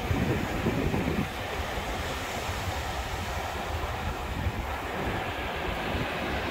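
Wind noise on the microphone over the wash of small waves at the water's edge: a steady noise, heaviest in the low end.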